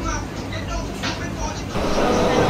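Indistinct voices over a steady low rumble, with a few short sharp accents.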